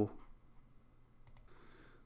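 Two faint, quick computer mouse clicks close together, about a second and a quarter in, in a near-quiet pause.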